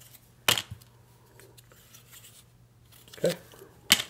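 Stiff cardboard number-line strips handled on a tabletop. There is a sharp clack about half a second in, then a few faint taps, and another clack near the end as the strips are set down and stacked.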